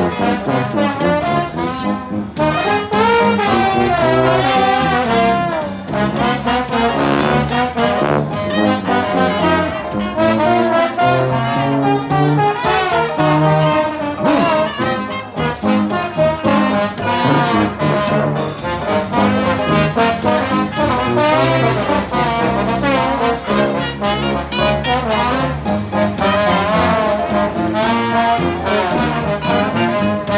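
A live street jazz band playing a horn-led instrumental passage, with trombone and trumpet over a stepping bass line and drums.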